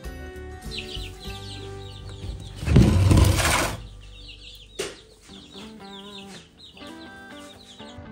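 Baby chicks peeping in short, falling cheeps over background music. About three seconds in comes a loud rush of noise lasting about a second as the plastic tote of wood-shaving bedding is handled.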